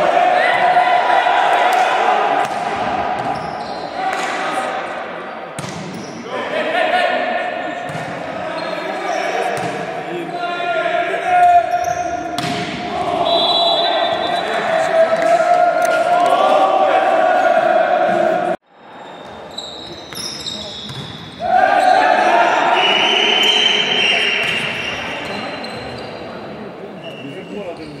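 Loud, sustained shouting and chanting voices echoing in a large sports hall, with sharp smacks of a volleyball being hit. The sound cuts out suddenly about two-thirds of the way through, then the shouting starts again.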